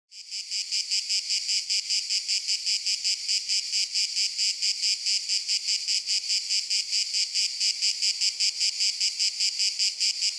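High-pitched insect chirping, cricket-like, in a fast, even rhythm of about five pulses a second.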